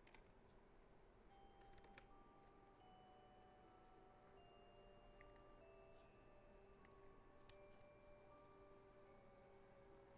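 Near silence: a few faint scattered clicks from a computer mouse and keyboard over faint, soft background music of long held notes.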